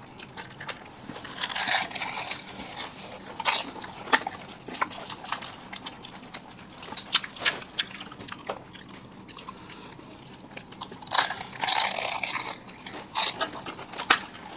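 Fuchka (pani puri) being eaten: crisp puri shells filled with spiced water crunching and crackling as they are bitten and chewed, several people at once. The crunching comes as many short sharp cracks, with louder bursts about two seconds in and again about eleven seconds in.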